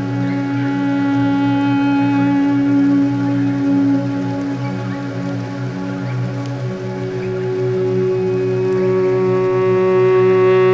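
Ambient guitar music: slow, sustained electric guitar notes looped and layered through a long delay, over a low pulsing drone made from a forest stream recording turned into pitched reverb. One held note fades out partway through and a new, higher note swells in near the end.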